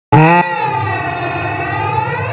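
Electronic intro sound effect: a brief loud synth chord that cuts off after a fraction of a second, then a sustained synth tone with a slow sweeping, phasing swirl over a steady low hum.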